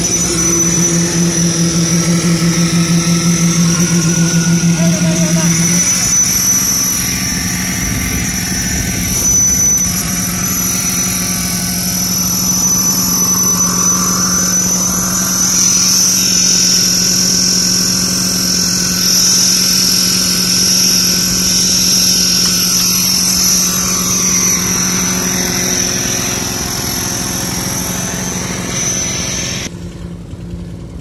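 Small engine of a concrete poker vibrator running steadily, with a constant high-pitched whine over its hum. For about the first six seconds the hum throbs, then it evens out.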